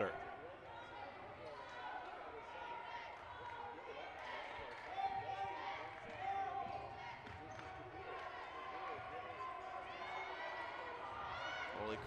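Basketball dribbled on a hardwood gym court, bouncing repeatedly, under faint voices of players and spectators in the gym.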